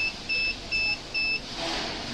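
Vending machine's metal keypad beeping as keys are pressed: three short, identical high beeps about two a second, just after the end of another one.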